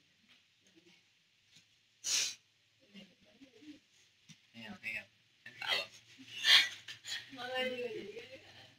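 A person's voice, low and indistinct, with short breathy noises about two seconds in and again, louder, about six and a half seconds in.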